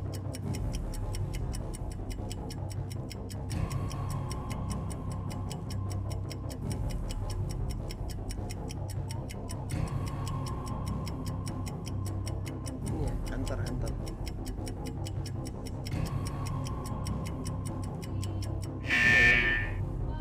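Game-show countdown cue: steady, evenly spaced clock ticking over a low pulsing music bed, running down a twenty-second timer. It ends about a second before the end with a short, loud, high electronic alarm tone that marks time up.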